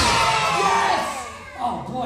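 A high voice calls out a long whoop that falls in pitch over about a second, followed by short bits of talk and shouting.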